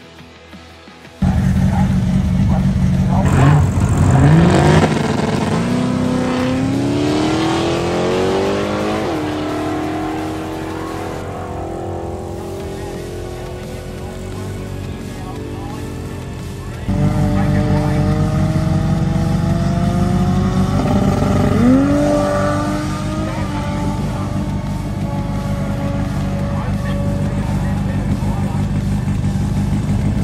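Drag-racing car engines. A heavy engine rumble comes in suddenly about a second in, then the pitch climbs for several seconds as a car accelerates away before falling back. A second loud stretch of rumble starts suddenly a little past halfway, with another sharp rising rev about two-thirds through.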